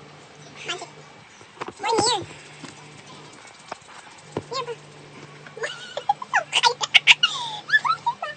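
People laughing: a short high-pitched squeal about two seconds in, then a rapid run of loud laughter near the end. A faint steady low hum runs underneath.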